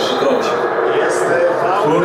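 A man speaking continuously.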